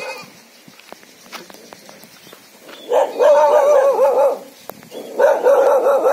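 Dogs barking fiercely in long, wavering, howl-like cries: two of them, each about a second and a half, the first about three seconds in.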